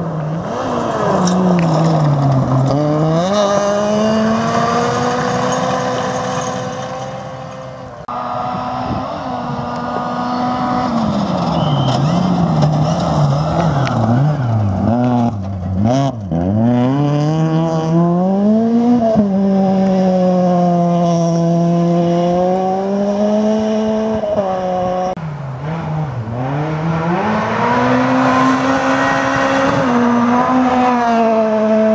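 Front-wheel-drive rally car engines, among them a Ford Focus rally car, revving hard on a gravel stage: the pitch climbs under acceleration and drops sharply at each gear change or lift, over and over. The engine sound changes abruptly about eight seconds in and again a couple of times later as one pass gives way to the next.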